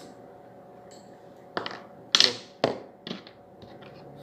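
Handling noise on a pump air rifle and its steel fish dart: about four sharp clicks and knocks in the second half, the loudest a little past two seconds in, over a faint steady hum.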